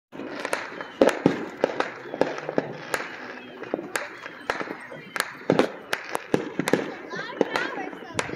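Consumer fireworks and firecrackers going off all around: dozens of sharp bangs and pops at irregular intervals, the loudest about a second in, over a continuous background of more distant bangs and crackle.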